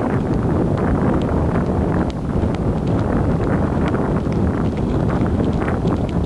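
Wind buffeting the microphone of a power wheelchair moving fast, a dense, steady rumble with frequent light irregular taps over it.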